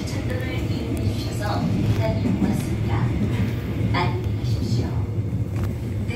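Subway car interior running noise: a steady low rumble from the moving Busan Metro Line 1 train, with a recorded onboard announcement voice heard in pieces over it.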